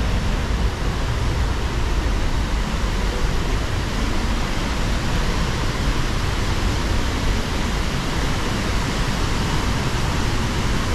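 Steady roar of a large waterfall and the fast river below it, an even rushing noise that holds at one level throughout.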